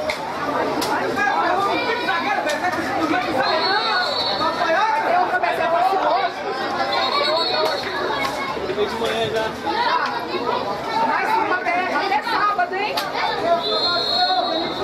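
Several people talking and calling out at once, a steady babble of voices around a football pitch. Three short high whistle tones cut through it: about three seconds in, about seven seconds in, and near the end.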